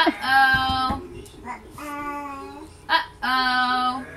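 A voice singing three long, steady held notes, with a few soft thumps about half a second in.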